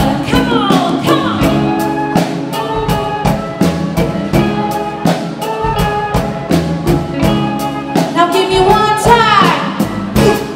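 A live band playing, with drums keeping a steady beat under guitar, bass, keyboard and a singing voice. A sweeping run near the end leads into the close of the song.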